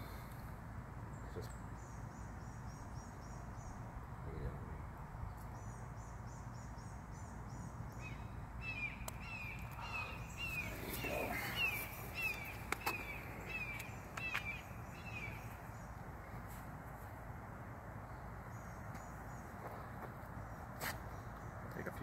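A bird sings a run of quick, repeated downward chirps, about two a second, for several seconds in the middle, over a steady low outdoor rumble. A few sharp clicks sound here and there.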